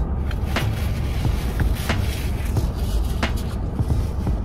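Steady low rumble inside a car's cabin, with a few sharp clicks from someone chewing food about a second and a half apart.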